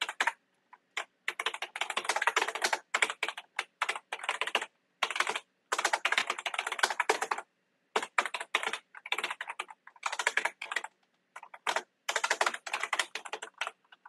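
Typing on a computer keyboard: fast runs of keystrokes broken by short pauses.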